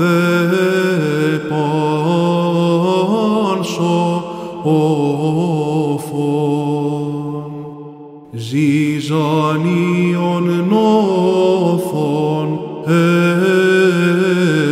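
Greek Orthodox Byzantine chant sung solo by a male chanter: a slow, ornamented melody held over a sustained low note. The singing breaks off briefly a little past halfway, then resumes.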